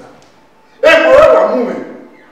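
A man speaking one short, loud, emphatic phrase in Edo, starting just under a second in.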